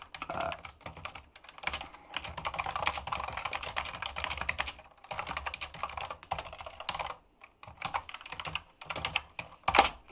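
Typing on a computer keyboard in quick bursts of keystrokes with short pauses between them, with one louder, sharper click near the end.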